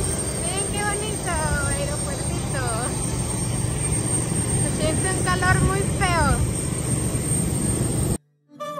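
Jet aircraft running on the airport apron: a steady rumble with a constant high-pitched whine on top. Voices come and go over it.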